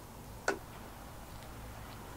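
A single short, sharp click of plastic on plastic, about half a second in: the long brewing paddle knocking against the plastic bucket lid it is being drawn through, over a faint steady background.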